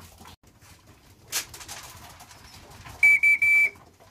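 Three whistle blasts on one steady high note, the last a little longer, about three seconds in: a recall whistle calling young racing pigeons back into the loft. A single brief sharp noise a little after a second in.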